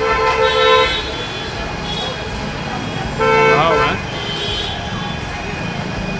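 Vehicle horn honking twice in street traffic: a steady held blast at the start lasting about a second and another about three seconds in, over a constant hum of street noise.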